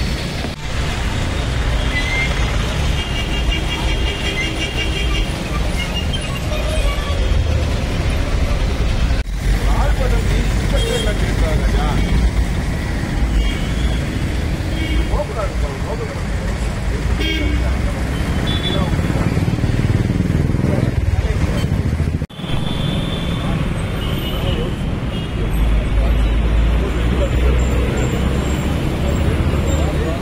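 Many people talking at once over the low rumble of vehicle engines and traffic, with two abrupt breaks in the sound.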